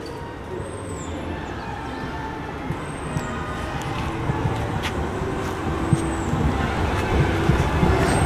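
Road traffic noise, growing louder towards the end. A faint, high, short chirp recurs about every two and a half seconds.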